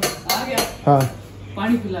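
Stainless-steel saucepans and utensils clinking and clanking against each other as they are handled at a kitchen counter, a few sharp metallic knocks in the first second, with a woman talking over them.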